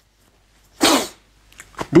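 A man sneezing once, a single short burst about a second in.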